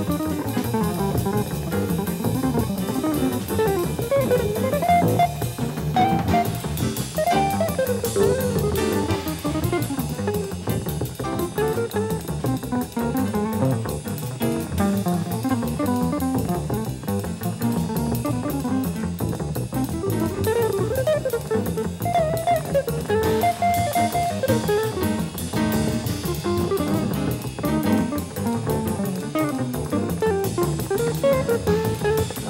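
Live jazz combo: a guitar plays running single-note melodic lines over bass and drums.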